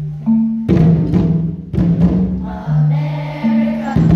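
Children playing drums in a slow rhythm, each deep stroke ringing on. A children's choir joins in singing from about halfway in.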